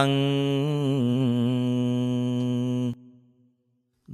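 A single voice chanting in Pali, holding one long drawn-out note with a slight waver, cut off about three seconds in. It is the devotional chant that opens a Buddhist Dhamma sermon, calling the devas to come and listen.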